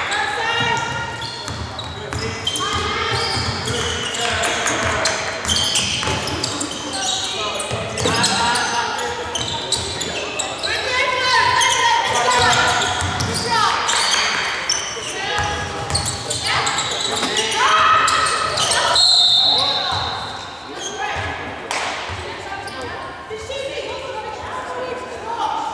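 Sounds of a live basketball game in an echoing sports hall: players' voices calling out over one another and the ball bouncing on the wooden court. Near the end a short, high, steady whistle-like tone sounds once, fitting a referee's whistle stopping play.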